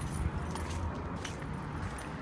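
Light clicks and jingles about twice a second, in step with walking, over a steady low rumble.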